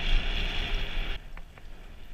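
Wind rushing over the camera microphone and a Trek Remedy mountain bike's tyres rolling over loose gravel and dirt at speed. The rush drops off sharply just over a second in, leaving a lower rumble with a few light clicks and rattles from the bike.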